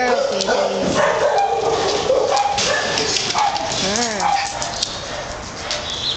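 Many kennelled shelter dogs barking and yelping at once, a continuous din, with one rising-and-falling call about four seconds in.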